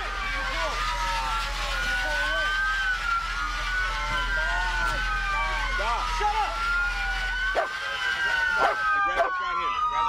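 Several police car sirens wailing at once, their slow rising and falling tones overlapping, with officers shouting over them.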